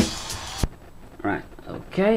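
Drum-heavy music from a vinyl record played through a magnetic cartridge, its last cymbal wash cutting off suddenly about two-thirds of a second in as the playback is stopped.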